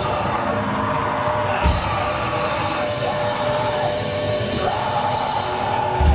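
Heavy metal band playing live, loud and distorted: guitars hold ringing sustained notes, with one heavy drum and bass hit a little under two seconds in.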